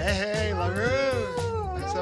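A long, drawn-out, high-pitched excited vocal cry of greeting that rises in pitch and then falls, over background music.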